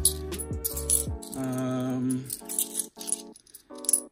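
Bimetallic £2 coins clinking together as they are picked through in the hand, over background music with held chords.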